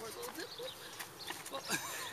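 Faint, short vocal sounds over low outdoor ambience, with a few light clicks.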